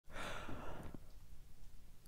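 A person's breath, a faint airy sound lasting about a second, then quiet.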